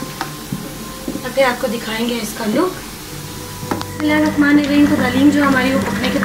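A spoon stirring thick, simmering haleem in a cooking pot, with a sizzle from the hot pot. About four seconds in, background music with held tones comes in and is the loudest sound.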